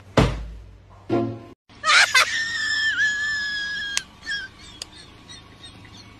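A person's high-pitched scream, held for about two seconds, after a few short, softer sounds.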